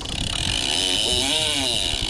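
Okuma Makaira lever-drag reel under heavy load from a big swordfish: a steady mechanical buzz as the reel is cranked and the drag gives line to the diving fish.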